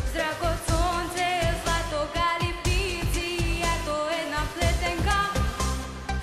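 Young female voice singing a pop song live into a microphone over a backing track with a steady dance drum beat.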